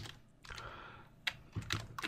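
Computer keyboard typing: a few separate keystroke clicks.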